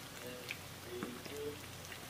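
Hot oil sizzling steadily around fish nuggets deep-frying in a pan, with a few short sharp pops.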